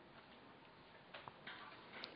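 Near silence: faint room hiss with a few small, faint clicks in the middle.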